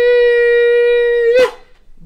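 A man singing one loud, high note at a steady pitch, which stops with a slight swoop about a second and a half in.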